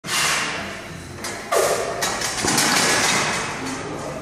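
A barbell loaded with about 300 kg of bumper plates being lifted out of a squat rack: a run of clanks and knocks from the bar and plates, the loudest about a second and a half in, with a brief ringing after it.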